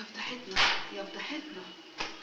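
A woman's voice crying out in distress in short repeated cries of "ya ya ya", with one loud sharp burst about half a second in.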